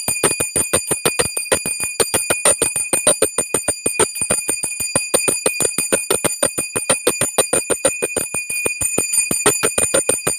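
Puja hand bell rung rapidly and continuously, about seven strikes a second, over a steady high ring.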